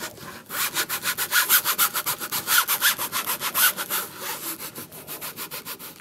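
A hand baren rubbed in quick, even back-and-forth strokes over the back of a linocut block pressed onto a canvas tote bag, pressing fabric ink into the cloth. The scratching strokes grow softer in the last couple of seconds.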